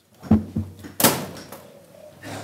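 A couple of low knocks, then a loud sharp thump about a second in that trails off into rustling: chairs and bodies moving as a room full of people stand up.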